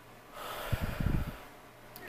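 A woman's heavy sigh, a breathy exhale of about a second starting about half a second in, close to the microphone.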